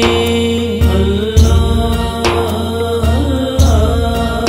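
Urdu naat music: chanted, layered vocals over a held drone, with a low pulsing beat underneath.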